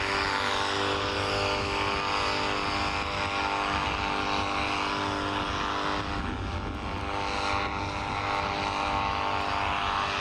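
Paramotor engine and propeller of a powered paraglider in flight, a steady drone. Its pitch wavers briefly a little after the middle.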